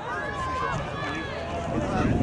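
Several voices calling and shouting at once across an open playing field, with no words clear, over steady outdoor background noise.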